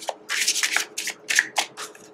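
A deck of tarot cards being shuffled by hand: a quick run of about eight short swishes.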